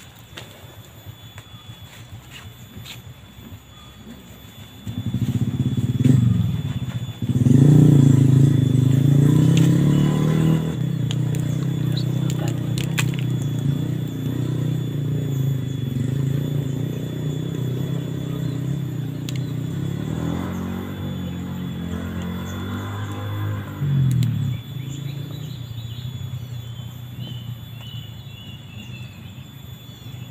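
An engine comes in sharply about five seconds in with a rise in pitch, then runs at a steady low pitch for nearly twenty seconds. A second swell about twenty-four seconds in is followed by a fade. A few short, high chirps come near the end.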